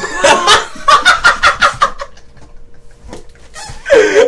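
A man laughing hard in a rapid, high-pitched cackle of about ten quick bursts for two seconds, then dying down, with another loud burst of laughter near the end.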